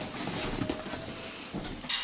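Cardboard parcel being opened by hand: irregular rustling and scraping of the box flaps and packaging, with a sharper click near the end.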